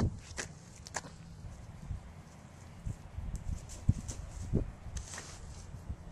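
Footsteps through dry fallen leaves on grass: a few irregular, uneven steps with short knocks.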